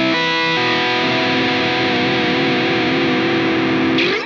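Distorted PRS electric guitar playing the introduction of a B Phrygian lick: a quick run of picked notes in the first half second, then one long held note with vibrato.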